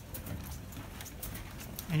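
Footsteps of several people walking on a hard, polished floor: irregular shoe clicks, a few each second.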